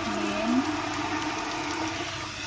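Water pouring in a steady stream from a tilted stainless-steel electric kettle.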